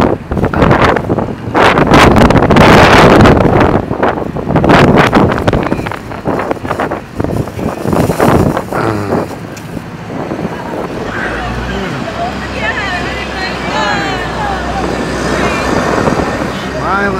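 Loud wind and handling noise on a phone microphone for the first several seconds, then quieter street traffic with a steady low engine rumble and faint indistinct voices.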